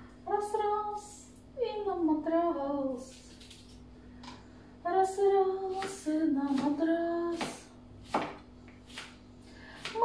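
A woman singing to herself in short wordless phrases, some notes held for about a second. A few sharp knife strikes on a cutting board come near the end as she slices cucumber.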